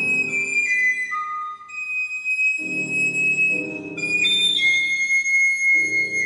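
A recorder playing a high melody of long held notes that step downward, with piano accompaniment. The piano drops out briefly and comes back in with chords about two and a half seconds in and again near the end.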